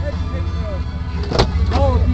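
1996 GMC Jimmy's V6 engine idling with a steady low throb, heard from inside the cab, with one sharp knock about a second and a half in.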